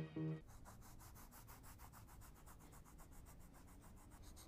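Music cuts off just after the start. Then comes faint, rapid, evenly repeated scratching of a coloured pencil shading back and forth on sketchbook paper.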